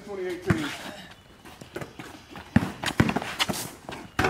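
Pickup basketball on a concrete driveway: a ball bouncing and sneakers scuffing as players drive to the hoop, heard as a series of sharp thuds, the loudest between about two and a half and three seconds in. A voice is heard briefly at the start.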